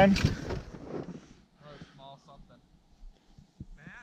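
A man's voice says one word close up, then only faint, distant voices are heard.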